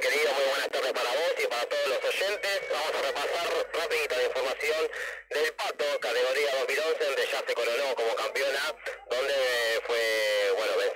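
Speech only: a voice talking over a thin, telephone-quality line with no low end.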